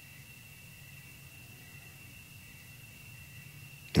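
Quiet, steady room tone in a pause of a talk: a low hiss with a thin, steady high whine and a faint low hum. A man's voice starts again right at the end.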